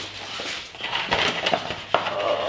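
A thin flexible plastic cutting mat being bent and handled, a rustling crackle of flexing plastic with a few light clicks, louder in the second half.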